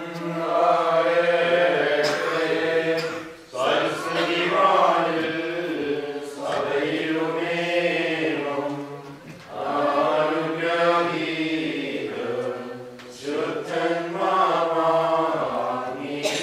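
A group of voices singing a Syriac-rite liturgical chant, in phrases broken by short pauses every three seconds or so.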